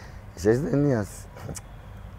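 A man's voice saying one short word, about half a second in, its pitch rising then falling, over a steady low background hum.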